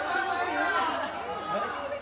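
Indistinct chatter of several people talking over one another in a room, with no single clear voice.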